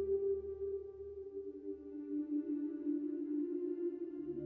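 Background ambient music of held, droning tones, the chord moving lower about a second in.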